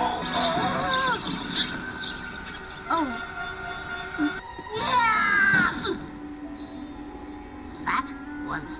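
Animated film soundtrack: music with steady held notes under short, high, wordless cries, and a falling wail about five seconds in.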